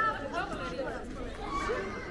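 Passers-by talking and chattering close by, several voices overlapping.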